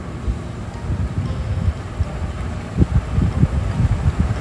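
Gas stove burner flame rumbling low and steady under a covered cast-iron pan, with a few soft knocks about three seconds in.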